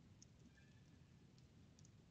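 Near silence with a few faint clicks at the computer, from the mouse and keys used to operate the software.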